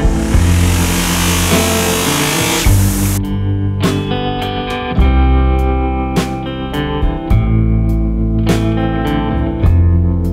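Background guitar music with a steady beat. For the first three seconds a loud hiss lies over it and then cuts off suddenly.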